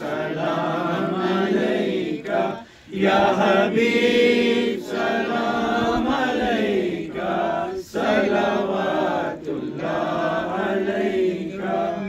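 Men chanting an Urdu devotional salam in praise of the Prophet into a microphone, with long held notes and short breaks for breath.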